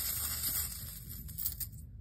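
Small metal charms being handled: faint rustling with light clicks, dying away after about a second and a half.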